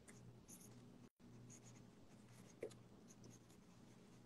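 Faint scratching of marker pens signing paper prints, in short strokes, over a low steady hum.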